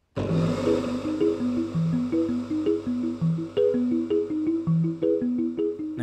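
Background music: a quick melody of short notes stepping up and down over a steady low tone, starting abruptly.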